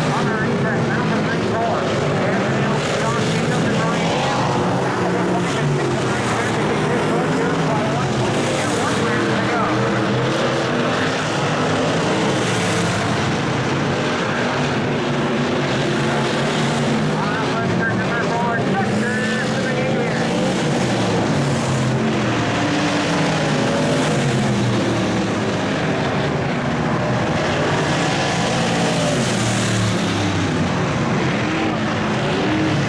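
Several dirt-track stock cars racing around the oval, their engines running hard, with pitch rising and falling as cars accelerate and pass.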